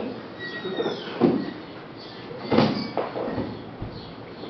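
Grapplers' bodies scuffing and thudding on gym mats during a jiu-jitsu roll, with two louder thumps about a second in and just past the middle.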